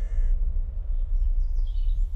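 A crow cawing once at the start, over a steady low rumble, with a few faint high bird chirps near the end.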